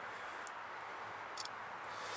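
Faint, steady outdoor background hiss with two small, sharp clicks, one about half a second in and one near the end.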